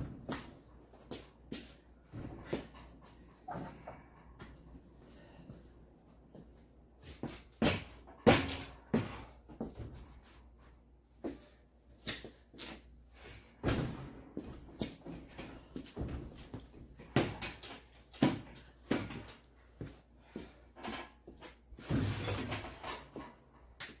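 Irregular metal clunks and knocks, some sharp and loud, as a Ford 5.0 V8 hanging from a shop engine hoist is shifted and eased into a pickup's engine bay.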